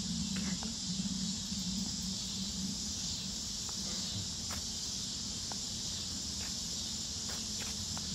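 Steady, even high-pitched chorus of insects droning in the trees, with a few faint footsteps on a paved path.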